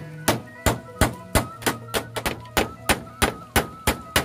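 A claw hammer nailing a bamboo pole to wooden roof framing overhead: a fast, even run of sharp blows, about three a second, a dozen or so in all.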